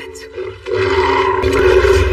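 Animated-film soundtrack: a soft held music tone, then about two-thirds of a second in a loud swell of film score and effects with a deep rumble underneath.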